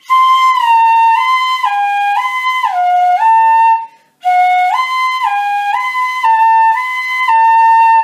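Pífano, a transverse cane fife in C, playing a slow left-hand fingering exercise: clear notes, each held about half a second, stepping up and down within a narrow range. The two phrases are separated by a short breath just after the middle.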